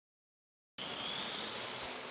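Small quadrotor's electric motors and propellers running in flight: a steady whir with a high-pitched whine, starting suddenly under a second in.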